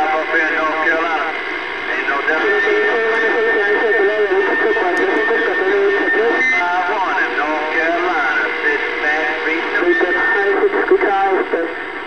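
Voices received over a CB radio base station's speaker, through static, with a steady high whistle on the channel from about two and a half to six and a half seconds in and again near ten seconds. Other stations are on the channel, partly covering the signal.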